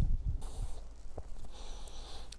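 Soft low thuds and rustling as hands shift on a patient's clothing and a padded treatment table, with a faint click about a second in.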